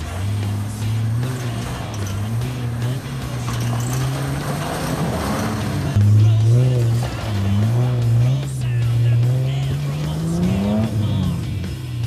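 Nissan GQ Patrol's engine revving up and down under load as it climbs a rutted dirt track, getting louder about halfway through and rising in pitch near the end before dropping back.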